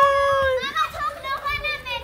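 A child's voice: a long, steady, held call at the start, followed by quicker, higher squeals and chatter.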